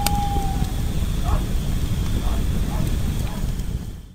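Horror-style sound-effect bed: a deep steady rumble. It opens with a sharp click and a short high tone, and faint wavering cries come through every second or so.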